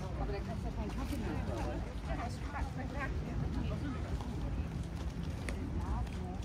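Passers-by talking as they stroll along a paved promenade, with scattered footstep clicks and a steady low rumble underneath.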